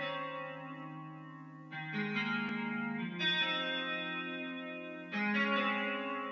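Guitar instrumental for a sad emo-trap type beat: sustained guitar chords, a new chord every one to two seconds, with no drums.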